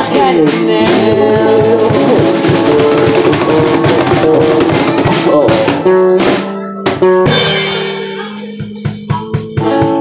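Small live band playing the final bars of a blues-rock song on bass, guitars, harmonica and two cajons. The band hits a break about two-thirds of the way in, then lets a final chord ring and fade under a few last cajon strikes near the end.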